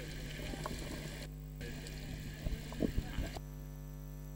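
Steady electrical mains hum from the commentary sound system, with faint voices from the ground coming through in snatches. A hiss of background noise cuts in and out a few times.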